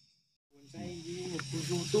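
Silence for the first half-second or so, then night insects chirring with a steady high-pitched trill, with faint talking underneath.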